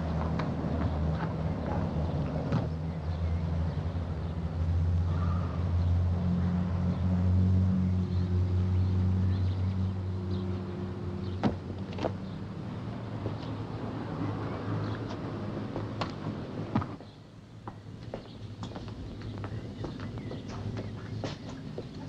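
Car engine running and driving off, loudest in the first ten seconds, then fading away about sixteen seconds in. A couple of sharp clicks come midway.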